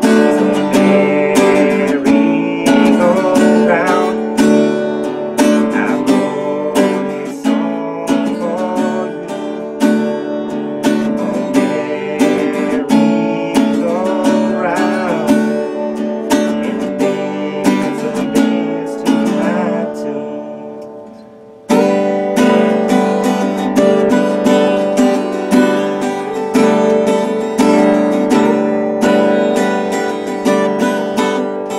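Acoustic guitar strummed steadily with a male voice singing over it, live at the microphone. About twenty seconds in the strumming dies away for a moment, then comes straight back in at full strength.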